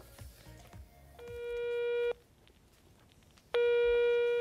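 Telephone ringback tone over a studio phone line: two steady one-second beeps about a second and a half apart, the call ringing before it is picked up.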